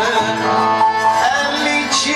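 Live Greek Anatolian (Constantinopolitan) song: a male voice singing over clarinet, violins and double bass, in a steady, ornamented melodic line.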